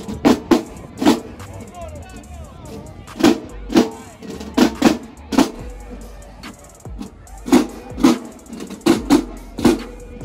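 Marching band drumline playing a cadence: loud, sharp bass drum and snare strikes in uneven groups of two or three.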